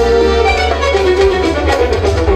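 Live band music through loudspeakers: keyboards, including a Korg Kronos, and bass guitar playing a held, ornamented melody line over a steady, heavy bass.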